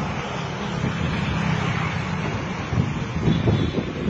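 Wind buffeting the microphone over general street noise, louder in irregular gusts near the end.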